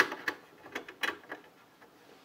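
Light metallic clicks and taps as a drive and its metal mount are lined up against the steel drive bay of a desktop tower's chassis, about five clicks in the first second and a half, then stopping.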